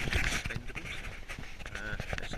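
Rustling and scraping handling noise close to the microphone as the camera is moved, loudest in the first half-second and scratchier after that.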